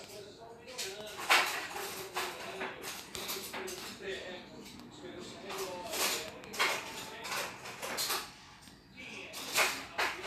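An indistinct person's voice, with scattered short, sharp hissing sounds.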